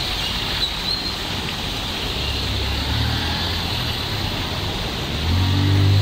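Road traffic: a motor vehicle's engine hum comes in about two seconds in and grows louder as it passes, loudest near the end, over a steady outdoor hiss.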